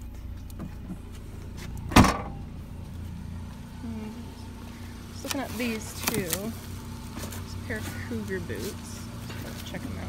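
A car's rear hatch is slammed shut once about two seconds in, a single loud thump, over a low steady hum.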